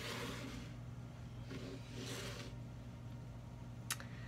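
Soft rustling and scraping as a tarot card deck is handled and slid across a tabletop, in two short spells, then a single sharp click near the end. A low steady hum runs underneath.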